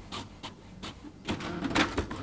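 HP inkjet printer printing a page: rapid, irregular clicks from the print head and paper feed over a mechanical whir, getting louder about a second and a half in.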